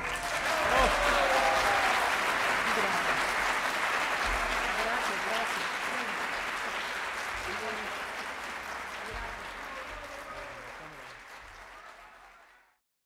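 Audience applause after a sung piece, a dense, even clapping that slowly and steadily fades away.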